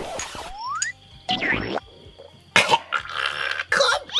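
Comedy sound effects: a short rising slide-whistle glide in the first second, then a few brief noisy bursts.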